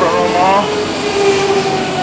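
Steady machine hum with a rushing hiss of air and a held humming tone that drifts slightly in pitch.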